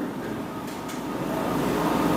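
Steady rushing room noise that slowly grows louder, with a few faint strokes of a marker writing on a whiteboard.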